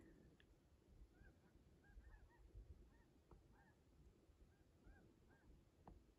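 Faint distant bird calls: short calls that each rise and fall in pitch, repeating about twice a second, with two soft clicks.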